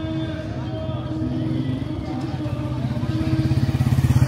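Motorcycle engine approaching at low speed, its beat growing steadily louder toward the end as it draws alongside.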